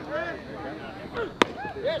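A single sharp pop of a pitched baseball striking the catcher's leather mitt about a second and a half in, over scattered crowd chatter.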